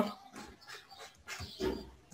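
Soft computer-keyboard typing, with a short faint vocal sound, like a whine, from about a second and a half in.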